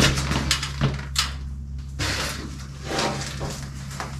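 Hand truck loaded with a wood stove rolling over a concrete floor, with a rumble and a few short knocks from the load, over a steady low hum.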